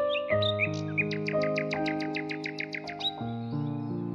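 Soft, slow piano music with held notes, with a songbird over it singing a fast trill of short falling notes, about eight a second, that stops about three seconds in.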